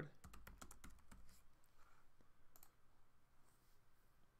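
Faint typing on a computer keyboard: a quick run of keystrokes in about the first second, then a few single clicks.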